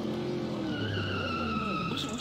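Car sound effect: an engine revving with its pitch rising and falling, joined about halfway through by a high tyre screech that slowly drops in pitch.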